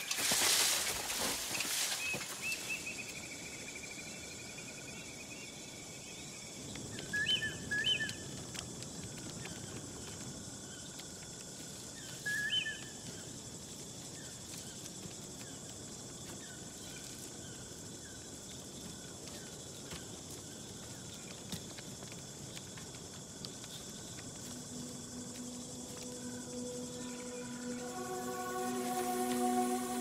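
Quiet outdoor nature ambience with a few short bird calls, including two brief chirp pairs about seven and twelve seconds in. A loud rush of noise fills the first two seconds, and sustained music notes fade in near the end.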